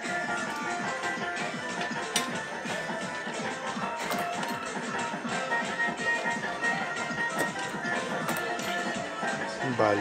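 Music with steady held tones over a busy arcade din, with scattered sharp clicks and knocks.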